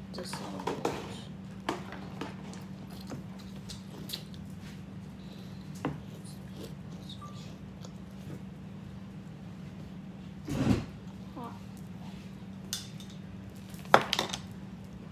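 Eating at a table: scattered taps and clatters as sandwiches and cheese balls are handled on plastic plates, with one louder thump about ten and a half seconds in, over a steady low hum.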